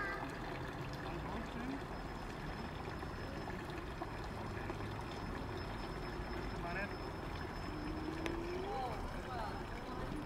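Water from a stone fountain's spouts splashing steadily into its basin, with faint voices of people nearby.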